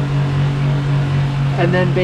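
Spectra watermaker's electric feed pumps running with a steady hum, the system flushing with its pressure relief valve still open rather than making product water.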